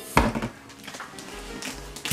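A single knock just after the start as something is handled on a tabletop, followed by soft handling sounds, with faint background music underneath.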